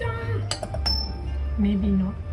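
Metal fork clinking against a china plate, two or three sharp clinks about half a second and just under a second in, one ringing briefly, over background music.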